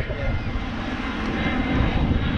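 Airliner passing low overhead, a steady deep rumble of its jet engines.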